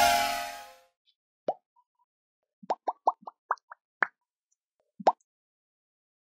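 Outro music fading out in the first second, then a string of about nine short cartoon 'plop' pop sound effects, each quickly rising in pitch. One comes alone, most are bunched together in the middle, and one comes near the end.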